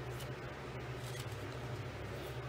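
Faint rustling of a folded cardstock piece being handled between the fingers, with a couple of brief crinkles, over a steady low hum.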